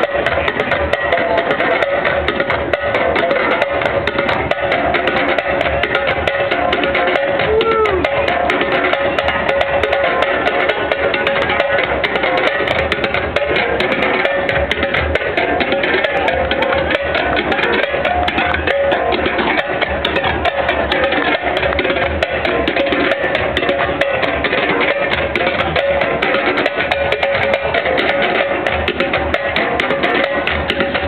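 Live West African hand-drum ensemble, djembes among the drums, playing a steady, dense rhythm of fast strokes without a break.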